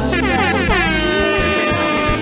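A loud horn-like blast over playing music: it sweeps down in pitch over about the first second, then holds a steady note. A steady bass line runs underneath.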